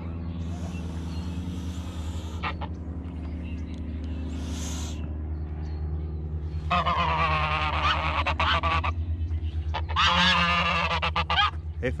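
Domestic geese of the grey greylag type giving two drawn-out, harsh honking calls in the second half, the first about two seconds long, the second shorter. Before them come two short hisses from the agitated birds.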